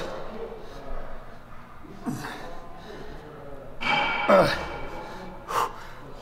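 A man's forceful gasping breaths of effort as he strains through reps of dumbbell lying triceps extensions: about three separate breaths, the loudest about four seconds in.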